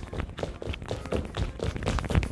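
Sneakers tapping, scuffing and thudding on a wooden stage floor in rapid, irregular succession as fast criss-cross shuffle dance footwork is stepped out.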